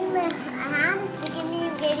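A child's voice over light background music.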